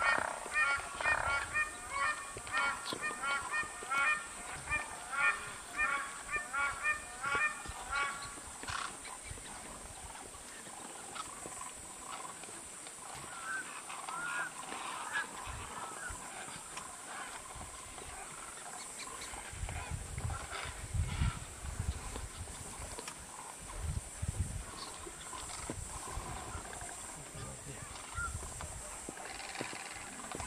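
Flock of waterbirds giving repeated honking calls, about two a second for the first eight seconds, then a quieter, scattered mix of calls. Low rumbles come in now and then in the second half, under a steady high hiss.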